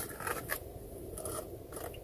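Faint scraping and a few light clicks of cutlery against a food container, mostly in the first half second.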